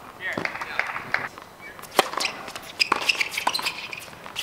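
Tennis racket strings striking the ball in a doubles point: a sharp pop of the serve about two seconds in, followed within a second and a half by the return and a volley.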